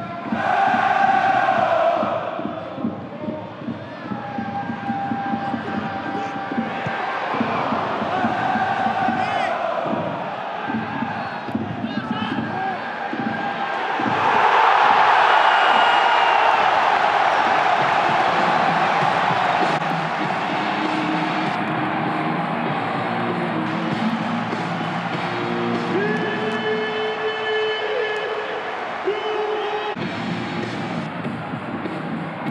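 Football stadium crowd chanting and singing, swelling into a loud roar a little before halfway as the home side scores, then settling back into chants.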